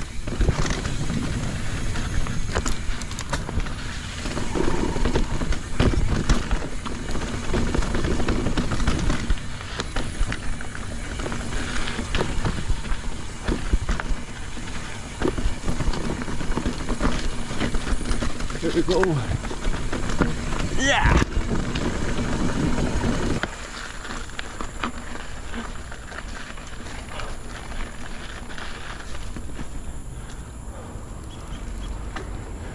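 Mountain bike ridden fast down a dirt trail on knobby Michelin Wild Enduro tyres, heard through an action camera: wind on the microphone, tyres rolling over dirt and roots, and the bike rattling and knocking over bumps. A short rising squeal comes about two-thirds of the way through, and soon after the noise drops to a quieter rolling sound.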